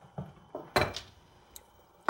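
Kitchenware handled on a countertop: three or four short clunks as a bowl is picked up, the loudest just under a second in.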